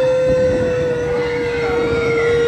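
A single steady tone held for about three seconds, easing slightly lower in pitch before it stops, over the background bustle of a busy crowd.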